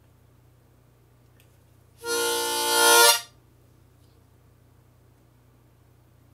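A harmonica played for one short held blow, about a second long, swelling louder before it stops abruptly.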